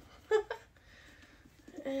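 A woman's short laugh, then a quiet pause, and near the end a long, steady, drawn-out vocal sound that is the start of a held "and…".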